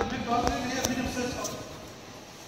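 Indistinct talking, with three short sharp knocks or clicks spread through the first second and a half, after which it goes quieter.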